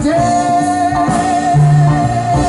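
Live jazz band: a singer holds one long, slightly wavering note over upright double bass and drums.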